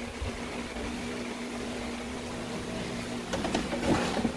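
A steady low machine hum with one even pitch, and a few light knocks near the end.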